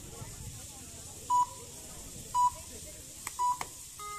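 Three short electronic beeps at one steady pitch, about a second apart, over faint background voices.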